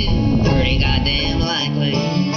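Acoustic guitar music from a country-style song. A low rumble underneath stops abruptly about one and a half seconds in.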